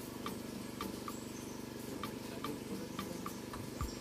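Steady low hum of a small engine, the kind that drives a power sprayer applying insecticide to mango trees, with faint scattered clicks through it.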